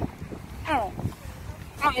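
A baby girl in a stroller gives a short whimper that falls in pitch about half a second in, then a brief wavering fuss near the end, stirring because the stroller has stopped. Wind buffets the microphone underneath.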